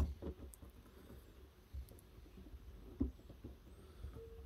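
A few faint clicks and knocks of a plastic glue-tab dent lifter being handled and set over a glued pull tab on a car body panel, the sharpest click at the very start.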